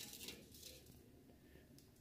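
Near silence, with a few faint clicks of metal tongs against the air fryer's perforated basket near the start as breaded fish pieces are lifted out.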